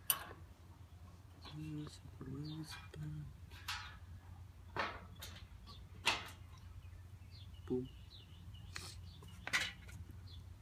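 Scattered sharp clicks and taps of metal and plastic parts and small hardware being handled and fitted while assembling a barbecue grill by hand, about seven in all, the loudest near the middle and near the end.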